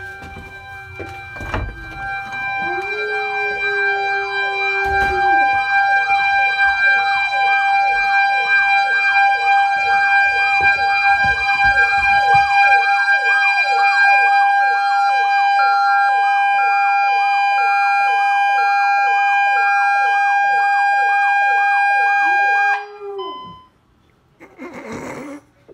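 ADT Safewatch Pro 3000 burglar alarm siren sounding for the basement door zone: a steady high tone under a rapidly repeating rising-and-falling wail. It cuts off suddenly near the end as the code is entered at the keypad. A dog howls along with it for a couple of seconds near the start.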